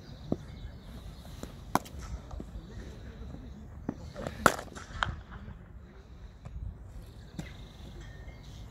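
Sharp knocks of cricket bats hitting balls at net practice: about six strikes at irregular intervals, the loudest about four and a half seconds in.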